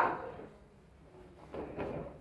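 A child thrown onto a folding foam gym mat lands with muffled thuds about one and a half seconds in, a breakfall slap-out on the mat.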